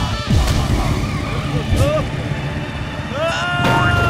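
Cartoon motorcycle engine running under background music. There is a short vocal yelp about two seconds in and a drawn-out cry near the end.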